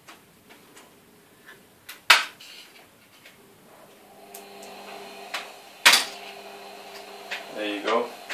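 Plastic retaining clips of an Asus Eee PC netbook keyboard snapping loose as the keyboard is pried up with a thin tool: sharp clicks, two of them loud, about two and six seconds in, with lighter ticks between. A steady hum comes in about halfway.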